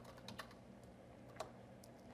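Faint computer keyboard keystrokes: a few scattered key taps, with one clearer click a little after halfway.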